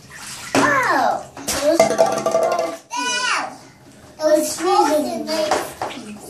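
Small children's voices, squeals and giggles in several short outbursts, some sliding down in pitch, over water splashing in a sink bath.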